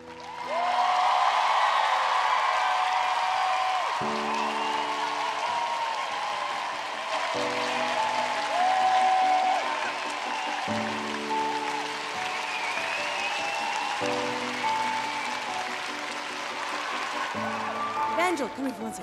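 Studio audience and judges applauding and cheering, over a music track of sustained chords that change about every three seconds.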